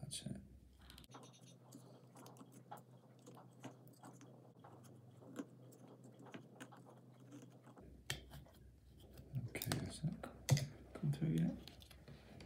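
Small clicks and scratches of a screwdriver tip and fingers working a wick through a hole in a clear plastic housing, growing louder and busier over the last few seconds as the plastic parts are handled.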